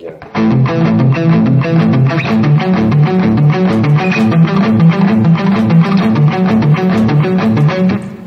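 Single-cut Les Paul-style electric guitar playing a palm-muted triplet riff: hammer-ons from the open A string to fretted notes against double stops on the D string, starting about a third of a second in and running as a fast, even rhythm of low notes.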